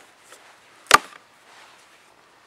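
A blade chopping into a log to cut a notch: a light knock at the start, then one loud, sharp chop about a second in.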